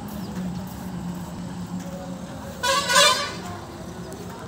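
A vehicle horn honks once briefly, a little over halfway in, the loudest sound, over a steady low hum.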